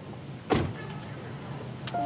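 A car door slams shut about half a second in, a single heavy thud, followed near the end by a light click.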